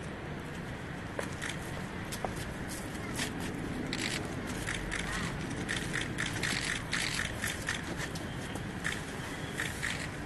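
Steady outdoor street hum with many short clicks and rustles scattered over it, more of them in the middle, as flowers and a wreath are handled and laid.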